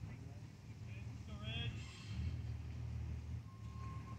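Low, steady outdoor rumble with a faint distant voice calling out about a second and a half in, and a faint steady tone near the end.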